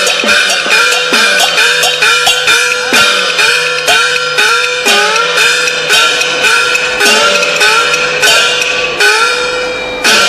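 Chinese opera percussion playing the opening: a run of gong strikes, each ringing tone sliding upward in pitch after the hit, with sharp cymbal-like clashes in between and the strikes spacing out a little toward the end.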